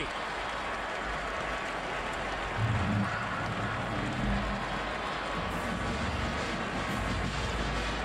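Large football stadium crowd cheering, a steady wall of noise. Low sustained tones, like band music, come in underneath about two and a half seconds in.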